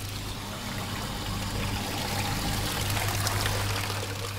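Water pouring and splashing into a hydraulic bench's tank, over the steady hum of the bench's pump, growing a little louder past the middle as the flow rate is increased.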